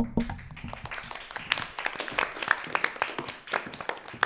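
A small group applauding: quick, uneven hand claps from a dozen or so people that carry through and thin out right at the end.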